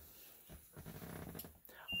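Vehicle electrics switched on at key-on: a faint low hum with a couple of small clicks. Right at the end a steady high-pitched warning buzzer from the dash starts sounding.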